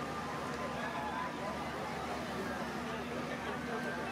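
Indistinct crowd chatter over a steady low hum.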